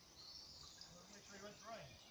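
Near silence, with a faint, distant voice about halfway through.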